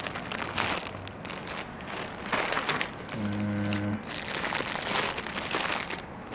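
Clear plastic packing bags crinkling and rustling as bagged electronic components are handled. About three seconds in, a short low steady hum like a man's "mmm" is heard for under a second.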